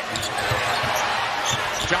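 A basketball being dribbled on a hardwood court, with several dull bounces, over the steady noise of an arena crowd.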